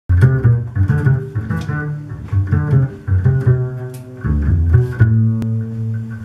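Upright double bass plucked pizzicato: a run of separate low notes, several a second, ending with one note left ringing near the end.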